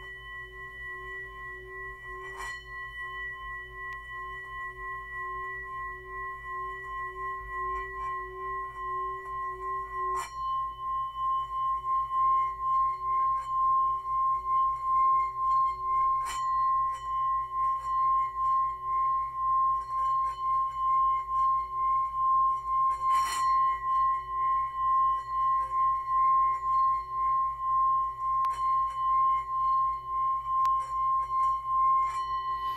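Metal singing bowl rubbed around its rim with a wooden mallet, singing a steady ringing tone that swells over the first ten seconds or so and then holds, wavering evenly as the mallet circles. The mallet clicks against the rim a few times.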